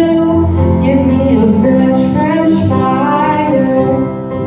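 A woman singing with her own keyboard accompaniment: a sustained bass and held chords under a melody line that bends between notes.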